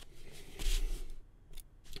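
A ballpoint pen scratching across paper in a short stroke, about half a second long.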